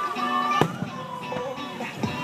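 Aerial firework shells bursting in a few sharp bangs, the loudest about half a second in, over music that plays throughout.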